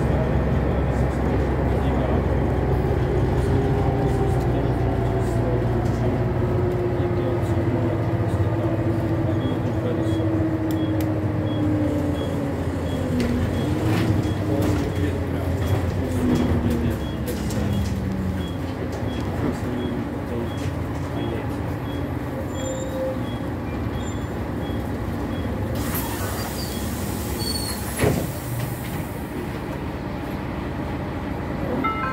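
Renault Citybus 12M city bus heard from the passenger saloon: a steady diesel engine drone with a drivetrain whine that falls slowly in pitch over about fifteen seconds as the bus slows. Near the end comes a hiss and a single knock.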